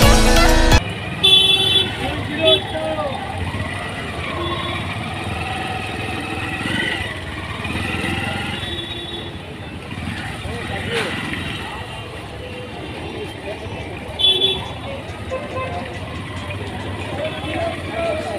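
Busy street ambience: a crowd's voices and passing traffic, with short vehicle horn toots a little over a second in and again about three-quarters of the way through.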